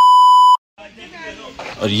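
Steady, loud test-tone beep of the kind played with TV colour bars, cutting off suddenly about half a second in. It is followed by a moment of dead silence and then faint outdoor background.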